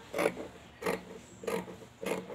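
Scissors cutting through cloth: three crisp snips, evenly spaced about two-thirds of a second apart.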